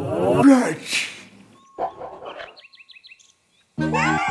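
A cartoon ogre's wordless vocalising for about a second, its pitch sliding up and down. Then comes a short burst and a quick run of about eight high blips as a cartoon sound effect. After a brief silence, children's background music starts again just before the end.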